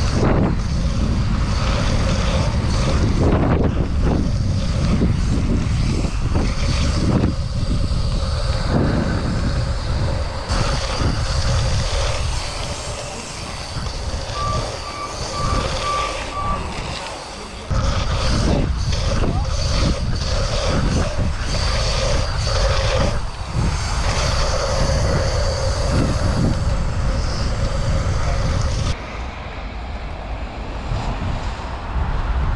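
Wind rushing over the microphone of a camera on a BMX bike riding a track at speed, with tyre noise and knocks and rattles over the jumps. About halfway through, a run of five short, evenly spaced beeps.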